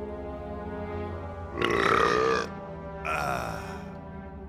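A man belching twice after a large meal: a long, loud belch about a second and a half in, then a shorter one. Background music plays underneath.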